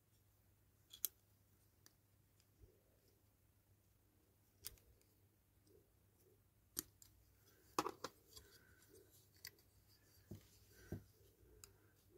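Faint, scattered clicks and small scrapes of a thin screwdriver tip prying at a small pull-back model car's body parts, with a cluster of clicks about eight seconds in.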